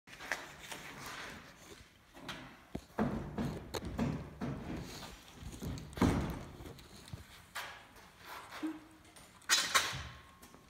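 Thin aluminum sheet being handled and bent over a pipe on a wooden table, giving irregular knocks, thumps and sheet-metal rattles. Heavy thumps come about three and six seconds in, and a quick cluster of knocks near the end.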